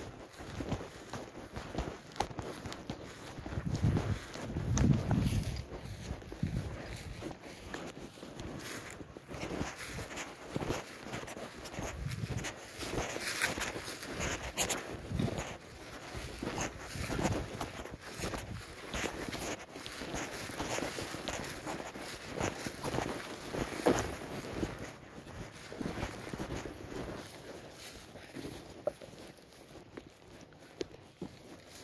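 Footsteps crunching and swishing through tall dry grass, irregular, with a few louder low thumps about four to five seconds in.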